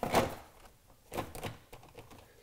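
Plastic knocks as the tire repair kit case is set down and pressed into place over the battery tray: one louder knock just after the start, then two lighter ones a little after a second in.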